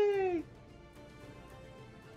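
A man's drawn-out, high-pitched cry that slides down in pitch and stops about half a second in, followed by faint background music.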